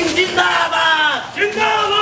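Crowd of protesters shouting slogans together in long, drawn-out calls, one falling away about a second in and the next starting soon after.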